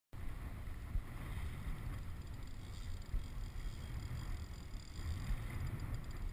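Wind buffeting the microphone of a camera mounted on a kayak at sea: a steady low rumble that rises and falls in gusts, with a couple of brief bumps.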